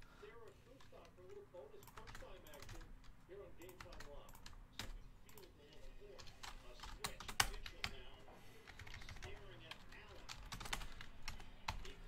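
Faint typing on a computer keyboard: scattered, irregular key clicks, with one louder click a little past the middle.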